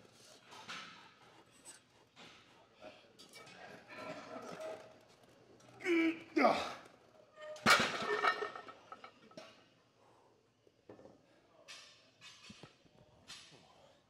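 Strained grunts and groans from a lifter grinding out heavy incline barbell bench press reps at 315 lb, loudest around six seconds in. About a second later a sharp metal clank, the loudest sound, as the loaded barbell comes down onto the rack's steel safety arms, with a few quieter clicks after.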